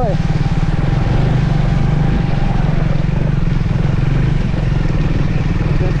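Triumph 400 motorcycle's single-cylinder engine running steadily at low road speed in third gear, pulling over a rough rocky track.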